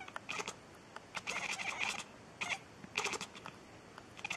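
A cat meowing: a few short calls and one longer call about a second in.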